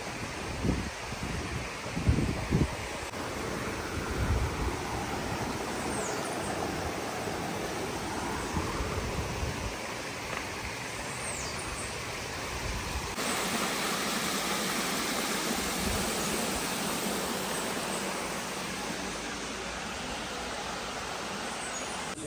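Steady outdoor rushing noise, with a few low bumps in the first three seconds and a couple of faint high chirps; the noise changes character suddenly about 13 seconds in.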